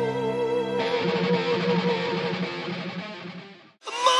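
A held operatic sung note with vibrato cuts off about a second in. It gives way to a strummed electric guitar passage, which fades out just before the end.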